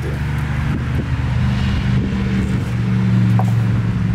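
A steady low mechanical hum, a motor running in the background.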